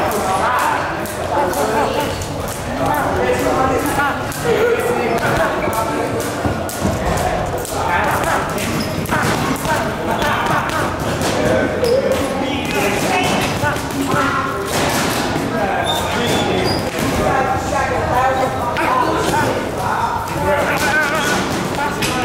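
Boxing gloves punching a double-end bag: a run of quick, irregular thuds as the bag is hit and rebounds, with people talking in the background.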